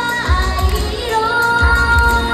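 A Japanese idol pop song played through a stage PA: several young women singing over a backing track with a heavy, pulsing bass beat.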